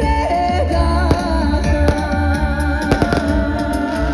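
Live amplified concert music: a sung melody over a heavy bass, recorded from within the crowd. A few sharp clicks cut through about three seconds in.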